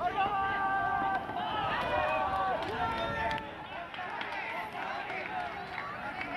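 Several young men's voices shouting long, drawn-out calls across a baseball field, overlapping one another. They are loudest in the first half, then fall to quieter calling.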